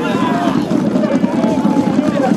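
A group of footballers shouting and cheering together in a loud, steady celebration, many voices overlapping.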